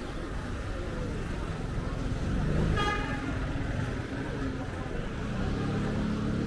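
Busy street ambience of crowd chatter and low traffic rumble, with a short vehicle horn toot about halfway through.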